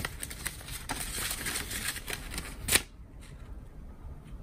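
A folded paper receipt and its card envelope being handled and unfolded: crisp paper rustling and crinkling, with a sharper crackle just before three seconds in, after which it goes much quieter.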